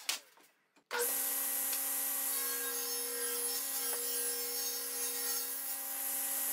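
A SawStop table saw running steadily and ripping a board, its motor hum held at one pitch under the hiss of the cut. It starts about a second in, after a moment of near silence.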